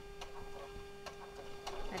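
Domestic electric sewing machine, run by foot pedal, stitching fabric: a steady motor hum with a few faint, irregular clicks.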